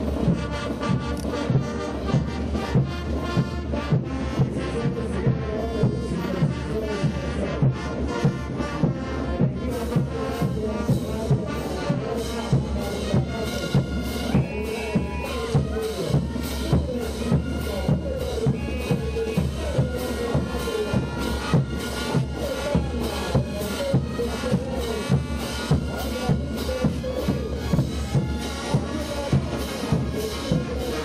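Brass band playing a morenada, the horns held over a steady bass-drum beat about twice a second.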